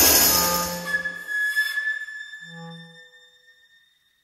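Contemporary chamber ensemble at the close of a piece: a loud ensemble sound dies away in the first second, leaving a high held tone that rings on and slowly fades, with a brief low note about two and a half seconds in.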